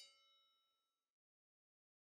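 Near silence, with the faint tail of a ringing chime fading out within about the first second.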